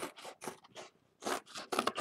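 Scissors cutting, about six short snips in quick succession.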